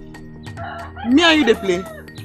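A rooster crowing once, about a second in, over soft background music.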